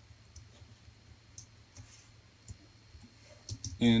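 A handful of separate, faint computer keyboard keystrokes, typed slowly and spread through the seconds. A single spoken word follows near the end.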